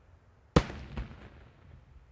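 Daytime aerial firework shells bursting: one loud, sharp bang about half a second in, then a weaker second bang half a second later, each trailing off briefly.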